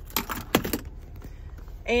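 A quick run of four or five sharp clicks with light jingling in the first second, over a low steady hum.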